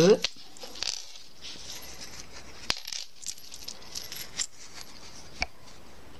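A nylon zipper being opened a little by hand: scattered light clicks and rustling from its teeth and slider, with a sharper click about two and a half seconds in and another near the end.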